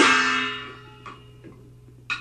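Taiwanese opera (gezaixi) accompaniment ending on one last struck beat that rings out and fades over about a second. After it come a couple of faint taps over the steady low hum of an old broadcast recording.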